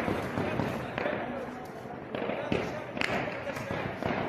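Crowd voices and shouting with a few sharp gunshots scattered through it, from celebratory firing into the air.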